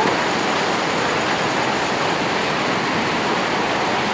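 A steady, even rushing noise with no rhythm or pitch, holding the same level throughout.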